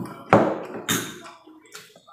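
Close-up eating sounds: a few short, sharp noises of chewing and handling food, the loudest about a third of a second in and again about a second in.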